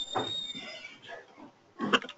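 Handling noise on a microphone during a handover between speakers: rubbing and scraping, with a thin high whistle held for under a second at the start and a sharp knock near the end.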